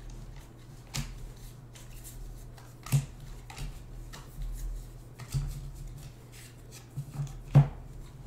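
Baseball trading cards being flipped off a stack by hand, one card after another, with several sharp snaps and rustles as each card is slid off. The loudest snap comes near the end, and a faint steady hum runs underneath.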